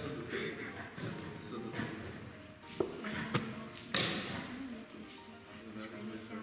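Sharp taps of wooden chess pieces being set down and chess clocks being pressed during fast play, a few distinct clicks with the loudest about four seconds in, over background music and low voices.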